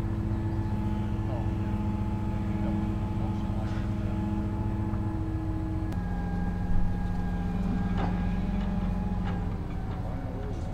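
A large engine running steadily, its pitch dropping a little about six seconds in, with a short knock just before seven seconds.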